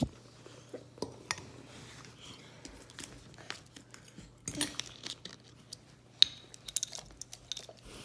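Quiet handling noises: scattered light clicks, taps and small knocks, a few a second at most, over a faint low steady hum.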